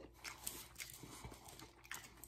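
Faint chewing and mouth sounds of a person eating, with a few soft clicks.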